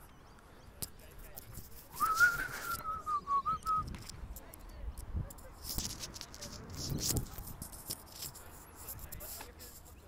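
A person whistling one long, wavering note about two seconds in, lasting nearly two seconds, over faint distant voices.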